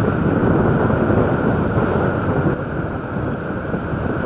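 Wind rushing over the microphone of a moving Honda CG 150 Fan motorcycle, with the bike's engine and road noise running steadily underneath.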